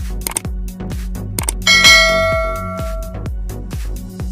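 Electronic background music with a steady beat of about two thumps a second; a little under two seconds in, a loud bell-like ding rings out over it and fades away over about a second and a half.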